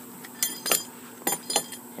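About five light metallic clinks with a brief ring, spread over under two seconds: a steel J-bolt anchor with its nut and washer being picked up and handled.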